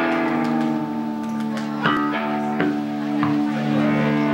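Live rock band jamming: electric guitar and bass hold long sustained notes, with a few scattered drum hits.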